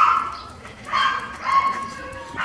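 A dog whining: a few short, high whines, the last one held a little longer near the end.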